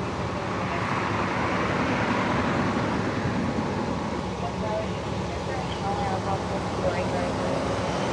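Steady engine rumble of idling emergency vehicles, with a broad traffic-like swell that builds over the first two seconds or so and fades, and faint distant voices.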